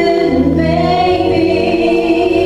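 A woman singing held notes into a handheld microphone, over a fuller choral backing.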